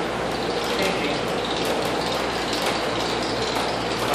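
Hand-cranked LEM vertical sausage stuffer working, its crank gears turning steadily as the piston pushes sausage meat out through the stuffing tube into casing.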